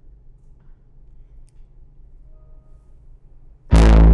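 A faint low hum, then near the end a loud bass note from the Output Substance bass synth starts abruptly and holds, rich in harmonics, played with its lo-fi distortion switched on.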